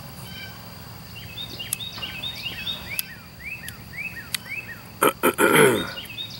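A songbird repeats short down-slurred whistled notes, about two or three a second. Near the end come a couple of clicks, then a man's loud, falling exhaled "ahh" after a sip of hard cider.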